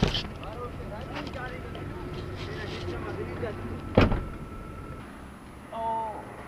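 Steady low rumble inside a vehicle cabin with faint voices, and one sharp knock about four seconds in.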